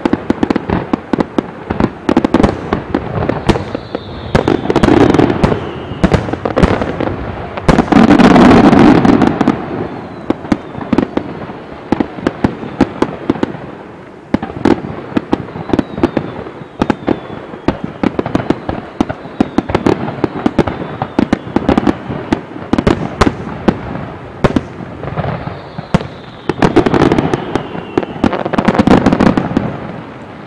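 Fireworks finale: a dense, continuous barrage of aerial shells launching and bursting, bang after bang, with heavier massed salvos about five seconds, eight to nine seconds (the loudest) and twenty-seven to twenty-nine seconds in. Several falling whistles sound over the bangs.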